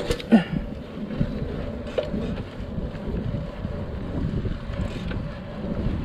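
Wind buffeting the microphone of a handlebar-mounted camera on a bicycle being ridden along a street, a steady rushing noise. There is a short knock right at the start and another about two seconds in.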